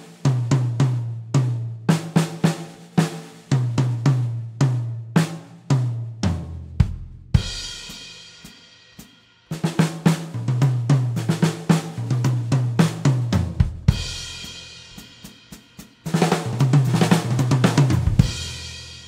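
Sakae Trilogy acoustic drum kit with Zildjian K cymbals played: a beat leading into a fill built on the Herta rudiment, ending on a crash cymbal left to ring for about two seconds. The phrase is played twice, and playing starts again near the end.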